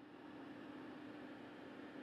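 Faint steady hiss with a low, even hum.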